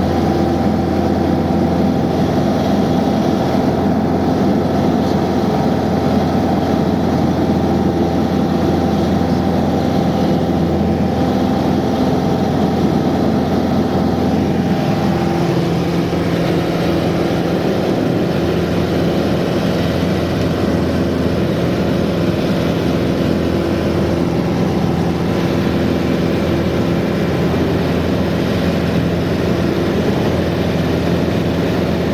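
Piper light aircraft's piston engine and propeller droning steadily, heard from inside the cabin in flight. The engine note changes about halfway through.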